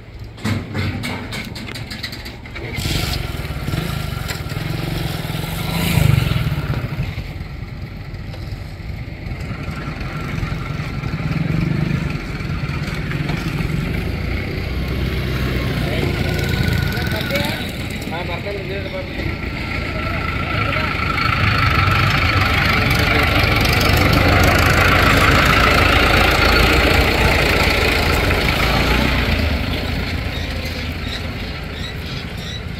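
A motorcycle engine idles among people's voices, then an express train approaches and passes close by. Its rolling noise grows loud about two-thirds of the way through.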